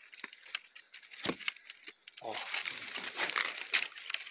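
Dry leaf litter on a forest floor crackling and rustling as it is brushed and handled, with a few sharper crackles about a second in and near the end.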